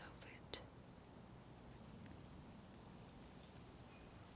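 Near silence: faint outdoor background hiss, with a small click about half a second in.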